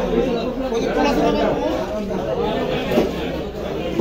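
Several people talking over one another: the steady chatter of a busy fish market.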